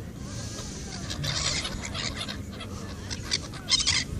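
A flock of gulls calling, crowding in to be fed, in bursts of sharp calls about a second in, around two seconds in and again near the end.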